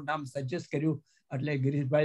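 Speech only: a man talking, with a short pause about a second in.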